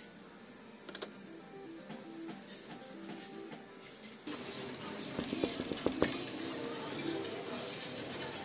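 Fishin' Frenzy fruit machine playing its electronic jingle of short stepped notes while the reels spin, with a couple of clicks about a second in. From about four seconds in, louder arcade hubbub with voices and handling clicks takes over.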